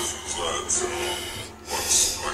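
Speech and music: a man's short 'ah' over the music of a TikTok challenge clip playing back.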